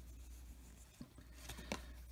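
Faint rubbing of baseball cards being slid over one another in the hands, with a few light clicks about a second in and near the end.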